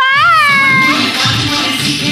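A high, drawn-out cry that rises and then falls, lasting about a second and sounding much like a meow. Music starts under it and carries on.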